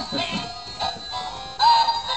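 Animated plush reindeer toy playing a Christmas song with electronic, synthetic-sounding singing. The song gets louder on a held note about a second and a half in.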